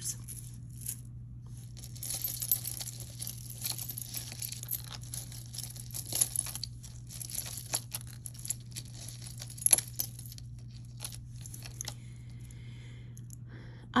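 Beaded necklaces and metal chains clinking and rustling as they are handled and laid on a tabletop: a scatter of small clicks with one sharper click about two-thirds of the way through, over a steady low hum.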